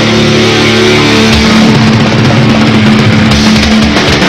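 Live thrash/hardcore band playing loud: distorted electric guitars and bass holding a sustained chord over driving drums, with no vocals.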